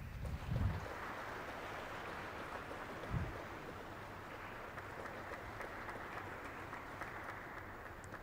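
An audience applauding steadily, a sustained patter of many hands clapping that fades out near the end. Two short low thumps come through, about half a second in and about three seconds in.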